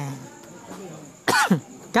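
A man coughs once, sharply, about a second and a half in, followed by a short spoken syllable.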